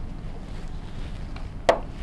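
A single sharp click near the end, as a number card is pressed onto a whiteboard, over a steady low rumble.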